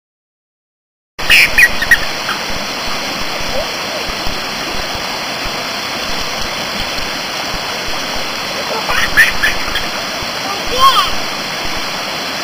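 Steady rushing of a waterfall and stream that cuts in about a second in, with a few brief high little children's voices over it.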